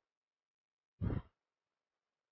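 A person's single short sigh about a second in, otherwise near silence.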